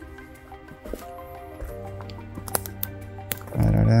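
Background music with held, sustained notes, with a few faint clicks. Near the end a man's voice comes in loudly.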